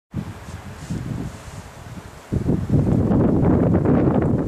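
Wind buffeting the microphone, a low rumble that gets clearly louder a little over two seconds in.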